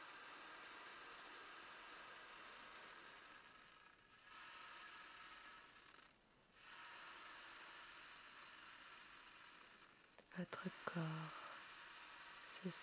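An ocean drum: beads roll across the inside of a frame drum as it is slowly tilted, giving a soft wave-like wash. The wash comes in three long swells of a few seconds each, with brief pauses between them. A soft voice comes in near the end.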